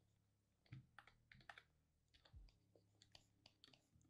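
Faint, irregular clicks of a computer keyboard and mouse, some close together in small clusters, over a faint low hum.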